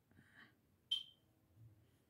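Mostly quiet with faint rustling. About a second in comes a single short, high-pitched beep.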